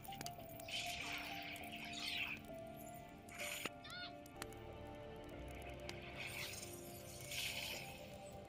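Quiet music with long sustained notes, crossed by a few soft hissing swells and a brief rising whistle about halfway through.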